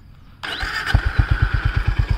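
Honda CB350RS's air-cooled single-cylinder engine started on the electric starter: a brief starter whir about half a second in, then the engine catches and settles into a steady idle of about ten exhaust pulses a second.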